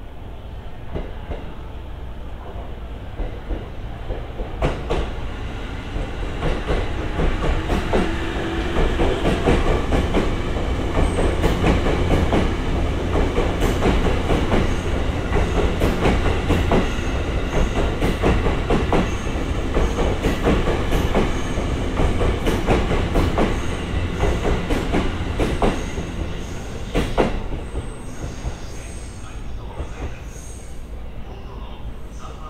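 E257 series electric train passing close by along a station platform. Its running noise builds about four seconds in, is loudest through the middle and fades near the end, with a steady stream of sharp wheel clicks over the rail joints.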